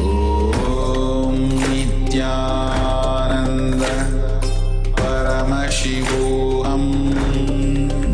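Mantra chanting set to music, sung phrases over a steady held drone, with sharp struck accents recurring about once a second.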